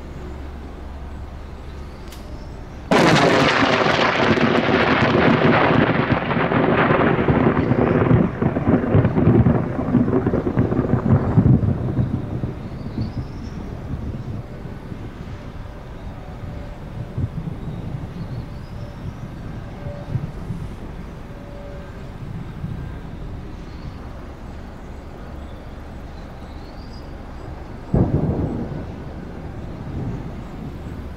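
A close lightning strike on a wind turbine blade: a sudden sharp crack, then thunder rumbling loudly for about eight seconds before fading away. Another short, sharp crack comes near the end.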